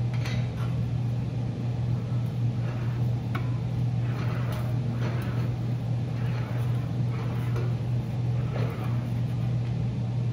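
Sheet-metal fender panel being rolled back and forth through an English wheel, heard as faint, irregular rolling and scraping of the metal. A steady low hum runs underneath and is the loudest sound.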